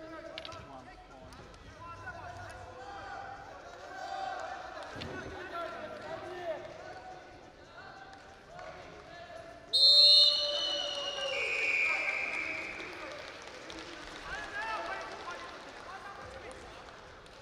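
A referee's whistle blown once about ten seconds in, a loud, shrill blast lasting about two seconds that sags slightly in pitch, signalling the restart of the wrestling bout. Before and after it, voices shout in the arena.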